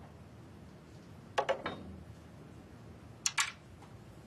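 Two short clusters of hard clicks about two seconds apart, three quick clicks and then two, as a snooker cue and rest are handled and set in place on the table.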